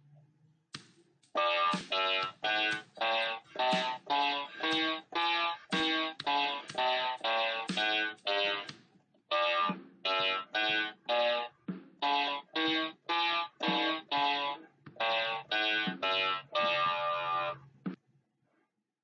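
F major scale played one octave up and down in the left hand on an MQ-6106 electronic keyboard, in a steady run of even, separate notes. A click comes just before the notes begin, and there is a brief break around the middle before the scale runs on again.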